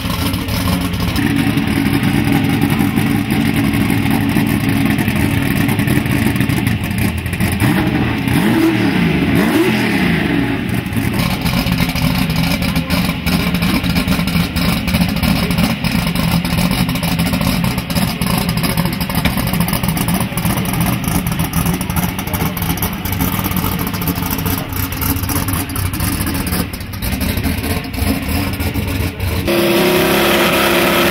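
Turbocharged drag-racing Mustang's engine idling loudly and steadily, with a brief swoop up and down in pitch about eight to ten seconds in.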